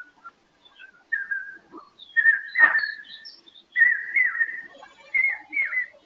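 A loose series of clear whistled notes at about one pitch, several bending down and back up. The loudest come about two and a half seconds in and again about four seconds in.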